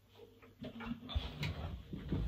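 Handling noise as an electroacoustic guitar is lifted and moved: soft low bumps and knocks, starting about half a second in after a near-quiet moment.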